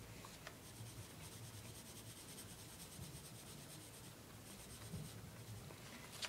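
Faint scratching of a pencil sketching on paper in short, repeated strokes.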